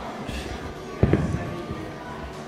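A dumbbell set down on a rubber gym floor about a second in: a sharp thud followed by a few softer knocks.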